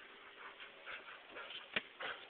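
A dog whimpering faintly in short bits, with one sharp knock near the end.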